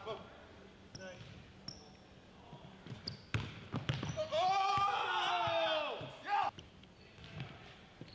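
Basketball dribbled on a hardwood gym floor, sharp bounces with short sneaker squeaks, as a player drives on a defender. A drawn-out vocal exclamation, falling in pitch at its end, comes in over the play from about four seconds in for two seconds.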